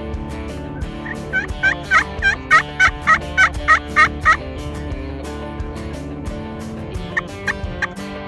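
Wild turkey calling: a run of about a dozen evenly spaced notes, roughly three a second, each dropping in pitch, then a few single notes near the end. Guitar music plays quietly underneath.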